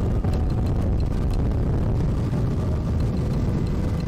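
Motorboat running at speed: a steady, low engine drone mixed with the rush of water and wind past the hull.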